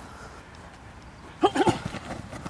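A man's short, loud shout of effort about one and a half seconds in, as a blocker and a defender engage hands in a one-on-one drill. Before it there is only faint open-air background.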